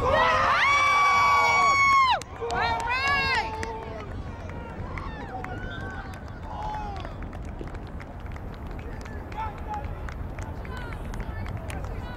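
A long, high yell held for about two seconds, then a few shorter shouts, then scattered distant voices: people cheering a goal in a soccer match.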